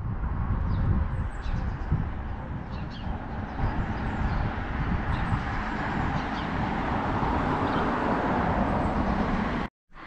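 Outdoor ambience: a steady rumbling noise throughout, with a few faint bird chirps in the first few seconds.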